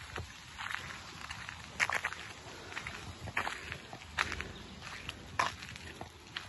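Footsteps on a gravel path: irregular, fairly quiet steps, roughly one a second.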